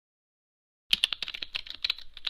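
Computer keyboard typing sound effect: a rapid run of key clicks starting about a second in, after silence.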